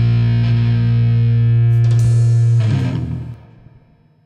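Rock band's final chord: distorted electric guitar and bass held steady, with drum and cymbal hits just before two seconds in. The band stops about three seconds in, and the chord rings down to silence.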